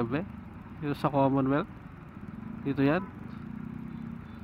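A man singing short wordless 'yu yu' phrases inside a motorcycle helmet, twice, with a steady low motorcycle and traffic hum underneath.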